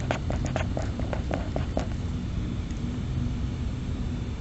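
A pen writing a word on paper: a quick run of short scratching strokes through the first two seconds, then stopping, leaving a steady low room hum.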